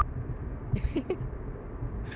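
Steady car road and engine noise, a played driving sound effect, with a few faint short sounds about a second in.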